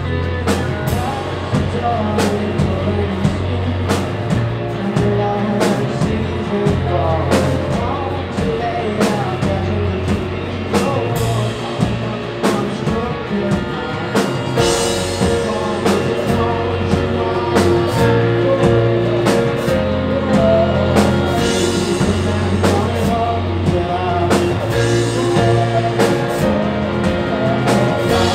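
Rock band playing live: a drum kit keeps a steady beat under electric guitars and bass guitar.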